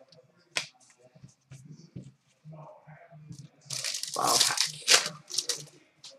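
Trading cards handled on a glass counter with soft knocks, then, about two-thirds of the way in, a loud crinkly tearing of a hockey card pack's wrapper as it is ripped open.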